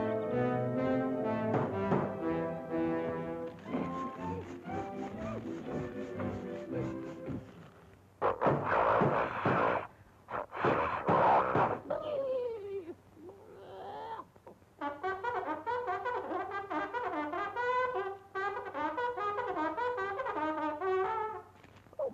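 Orchestral cartoon score led by brass. About eight seconds in, two loud noisy bursts break in, then a falling glide, then a fast wavering pitched passage that runs until just before the end.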